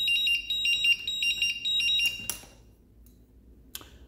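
IMAX B6 hobby balance charger beeping rapidly in a high two-tone electronic pattern, which stops about halfway through. A couple of faint clicks follow.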